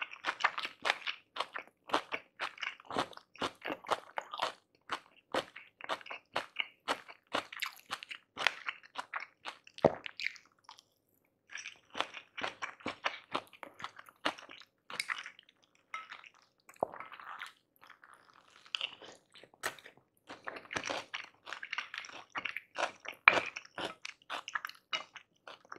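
Close-miked chewing and crunching of tahu gimbal, Indonesian fried tofu and crisp shrimp fritter with vegetables in peanut sauce: a dense run of quick, sharp crunches, with a short pause a little before the middle.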